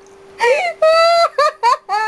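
High-pitched squealing laughter from a woman: a run of short wavering cries with one longer held squeal about a second in, starting just under half a second in.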